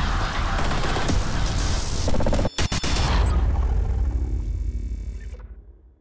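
Cinematic logo-sting sound design over music: dense crackling noise with a heavy low rumble, a brief break and a couple of sharp hits about two and a half seconds in, then a deep rumble that fades out to silence near the end.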